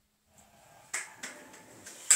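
Scattered hand claps beginning about a second in: one sharp clap followed by a few weaker ones, the first claps of applause.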